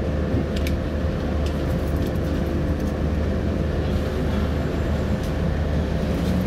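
Car engine idling while stopped, heard inside the cabin as a steady low rumble, with a thin steady whine and a few faint clicks over it.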